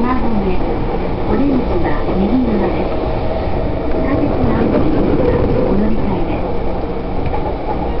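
Passenger train running at speed, heard from inside the car: a steady, loud rumble of wheels on rails, with a voice speaking over it.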